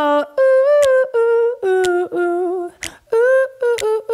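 Female voices humming a wordless melody in unison: a run of held notes at changing pitches with short breaks between them.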